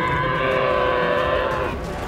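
An animated baby Spinosaurus gives one long, steady, bellowing call with its head raised. The call ends shortly before the close.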